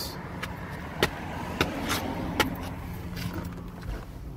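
Steady low rumble of motor-vehicle traffic, with a few light clicks scattered through it.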